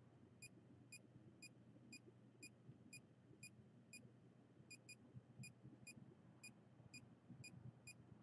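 Handheld RF/EMF meter beeping faintly: short, high-pitched beeps at an even pace of about two a second.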